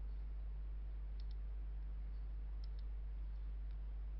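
Computer mouse clicking: two quick double clicks and a couple of single clicks, faint, over a steady low electrical hum.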